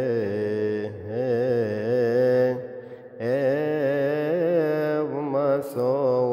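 A male voice chanting a melismatic Coptic Easter hymn, drawing long wavering notes out on single syllables. It breaks off for a breath about halfway through.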